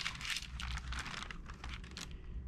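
Rapid, irregular crinkling and light clicking of a kite's thin sail being handled and shifted across a cutting mat as a steel ruler is laid over it.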